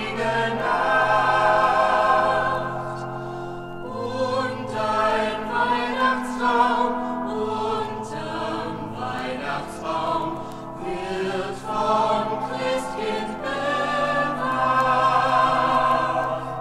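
Mixed choir singing a slow Christmas song with sustained pipe-organ accompaniment, in gently swelling and fading phrases.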